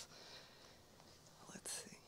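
Near silence: room tone in a pause between spoken sentences, with a brief faint hiss like a quick breath near the end.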